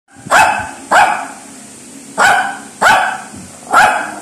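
A Shih Tzu barking five short, sharp barks in quick pairs, demand barking up at its owner for bread.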